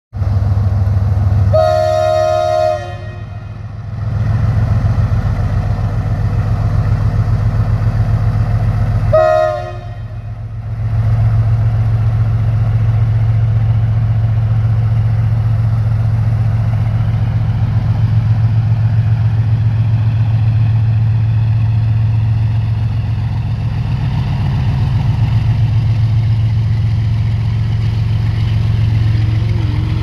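Indian Railways diesel freight locomotive sounding two horn blasts, a longer one about two seconds in and a shorter one near ten seconds. Between and after them its engine drones steadily and the loaded wagons rumble past.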